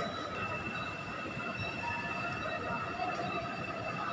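A steady high-pitched whine over a low, even background hum.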